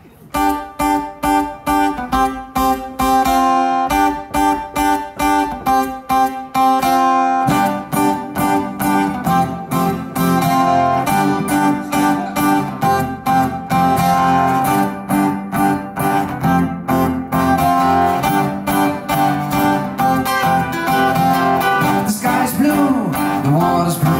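Acoustic guitar played live through a PA, a song intro of evenly repeated picked chords with a steady beat. A fuller, lower part comes in about seven and a half seconds in.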